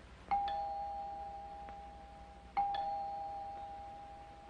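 Two-tone door chime sounding twice, a higher note followed by a lower ding-dong, each ringing on and fading slowly.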